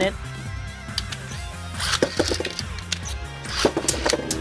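Beyblade spinning tops launched into a plastic stadium: a short burst of noise about two seconds in, then a few sharp clacks near the end as the tops land and strike. Background music plays underneath throughout.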